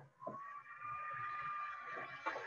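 A steady high-pitched whine with several overtones cuts in abruptly out of dead silence, its pitch settling after a slight rise, with a soft click just after it starts.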